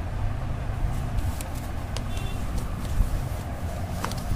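Steady low background rumble with a few faint clicks, then a short paper rustle near the end as a textbook page is turned.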